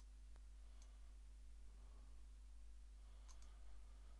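Near silence over a low steady hum, broken by a few faint computer mouse clicks: one just under half a second in, another near one second, and a quick pair a little after three seconds.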